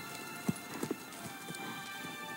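Horses' hooves clopping and shifting, with a few short hoof knocks about half a second and just under a second in, over a faint held musical tone from a film soundtrack.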